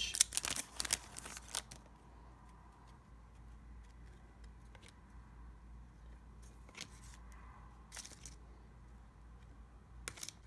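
A foil trading-card pack wrapper is torn open and crinkled in the first second or two. Then comes soft handling noise with a few scattered clicks as the chrome cards inside are slid and flipped.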